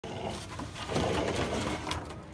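Pit bull puppy growling in play while tugging on a rope toy, a rapid rattling growl that grows louder about a second in.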